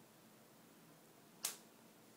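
A single short, sharp rip about one and a half seconds in: a wax strip pulled quickly off the skin of the upper lip.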